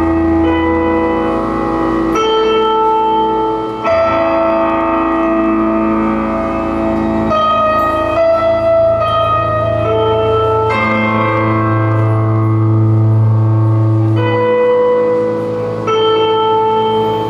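Live band playing slow, heavy music on electric guitars: long ringing chords held for a few seconds each, then changing.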